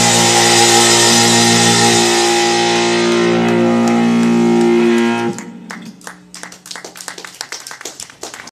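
A live rock band's final chord rings out on electric guitar and keyboard over a fading cymbal wash, then stops abruptly about five seconds in. Scattered audience clapping follows.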